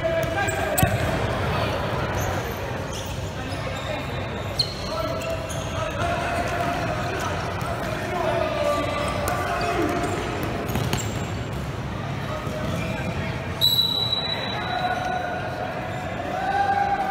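Futsal ball being kicked and bouncing on a hard indoor court, with a few sharp thuds, under shouting voices of players and spectators that echo in the gym hall. A high-pitched whistle blast sounds near the end.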